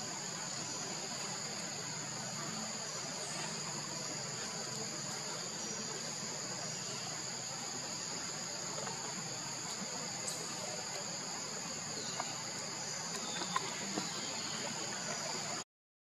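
Steady high-pitched chorus of insects with an outdoor background hiss, and a few faint clicks near the end. The sound cuts out briefly just before the end.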